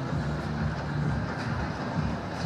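Outdoor fairground ambience: a steady low rumble with a few brief low hum tones and no distinct single events.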